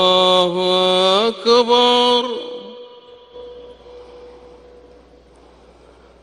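A muezzin's voice chanting the call to prayer (adhan) over the mosque's loudspeakers, holding the long ornamented final note of 'Allahu akbar' with a short break. The note ends about two seconds in and its echo fades away, leaving only a faint hum.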